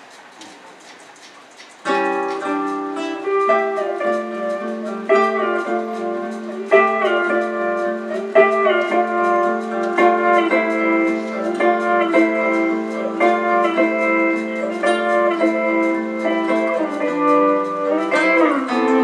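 A quiet pause, then about two seconds in, acoustic guitars start an instrumental introduction: plucked melody notes over held chord tones that run on without a break.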